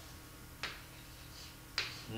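Two sharp taps of a stylus on an interactive display board, about a second apart, as syllables are written on the board, over a faint steady hum.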